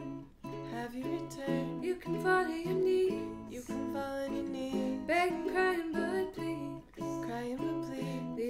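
Ukulele and acoustic guitar strumming a pop song's chords, with a sung vocal line over them.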